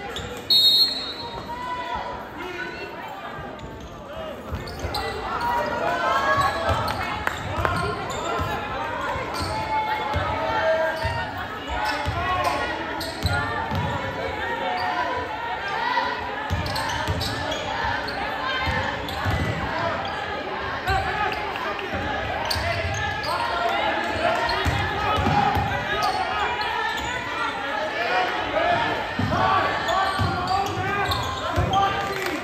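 Sounds of a basketball game in a large echoing gym: a short whistle blast about half a second in, at the opening jump ball, then a basketball bouncing on the hardwood court. Many spectators' voices and shouts swell from about five seconds in and carry on steadily under the thumps of the ball.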